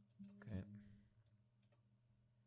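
Near silence with a faint low hum and a few computer mouse clicks in the first half, the clearest about half a second in.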